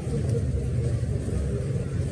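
A pause in speech filled by a steady, low background rumble, like a running engine or machinery in the surroundings.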